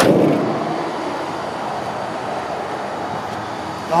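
Road traffic: a steady wash of car noise that swells at the start and then settles, with a sharp click right at the beginning.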